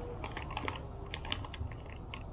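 Buttered popcorn being chewed with the mouth closed: irregular short crunchy clicks, several a second.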